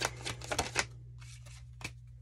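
Tarot cards being shuffled by hand: a quick run of crisp card slaps and riffles in the first second, then a single light tap near the end as a card is drawn and laid down.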